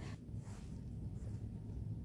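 Faint background with a steady low hum; no distinct event.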